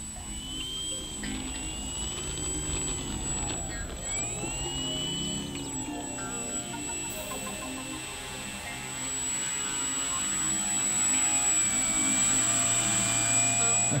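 Brushless electric motor (E-flite Power 10) and 12x6 propeller of a radio-controlled Fun Cub taxiing on grass, its whine gliding up and down as the throttle is blipped. It gets louder over the last few seconds as the plane comes close.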